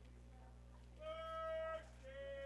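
A faint, drawn-out call from a spectator's voice, held on one pitch for almost a second, followed at the very end by a shorter, lower one.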